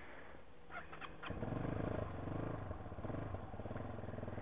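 Big Boy TSR 250's carbureted single-cylinder engine running on full choke, quiet at first, then louder with an uneven, wavering note from about a second in. The rider suspects the motor is getting too much choke because it is already warm.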